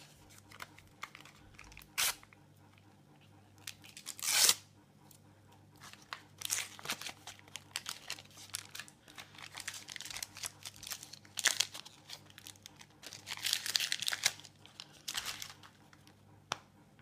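A Panini sticker packet's wrapper being torn open by hand, with one loud rip about four seconds in. Then the wrapper crinkles and the paper stickers rustle as they are pulled out and shuffled.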